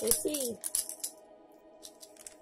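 A voice making two short cooing sounds, each falling in pitch, in the first half second, with faint rattly clicks and a steady faint tone beneath.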